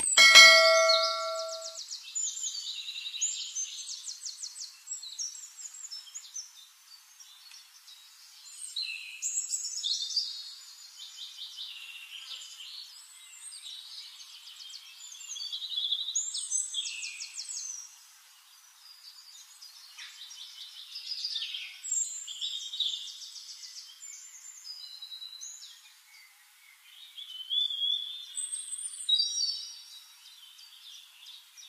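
A bell-like ding right at the start, ringing out over about two seconds, from a subscribe-button sound effect. After it, birds chirping and trilling in high, quick calls that come in clusters with short lulls.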